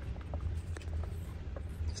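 Stirring stick working through a gallon can of latex paint, giving a few light, irregular clicks and taps as it knocks against the metal can.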